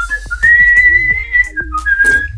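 Whistling: a short lower note, then one high note held for about a second, then two shorter lower notes near the end, over quiet background music.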